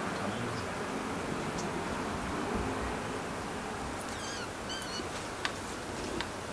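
Steady outdoor hiss of a wooded hillside. About four seconds in, a bird calls a short series of quick, warbling high chirps, and a sharp tick follows near the end.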